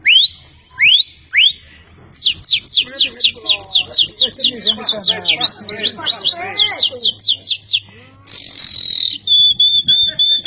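A man whistling an imitation of a Belgian canary's song by mouth: three rising whistles, then a fast run of falling notes, about five a second, for nearly six seconds. It ends in a brief hiss and a long, steady high whistle.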